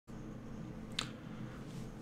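Faint room tone with a single short, sharp click about a second in.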